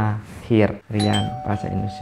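A man speaking, with a single bell-like ding about a second in whose tone rings on for over a second under his voice.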